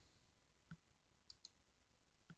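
Faint computer mouse clicks: one about two-thirds of a second in, then two in quick succession a little later, over near-silent room tone.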